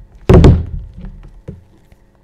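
A loud thump about a quarter second in that dies away over half a second, followed by three lighter knocks.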